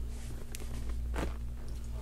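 Quiet room with a steady low hum and two faint short clicks, about half a second and a little over a second in.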